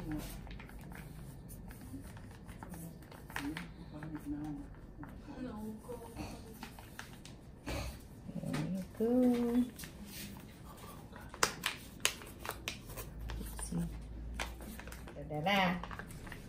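Faint voices murmuring in a small room, with a couple of sharp clicks about two thirds of the way through.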